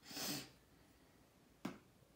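A metal spoon scooping flour from an aluminium canister. A short soft hiss of the spoon working through the flour comes first, then about a second and a half later a single sharp click of the spoon against the canister.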